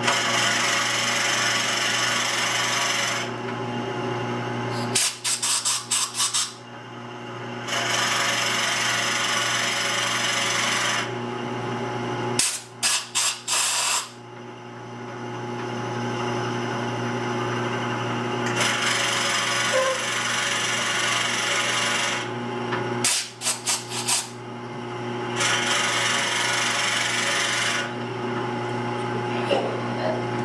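Wood lathe running with a steady hum while a spinning wood pepper mill blank is worked, giving four long stretches of rasping tool-on-wood noise. Between them come three brief clusters of rapid sharp clicks.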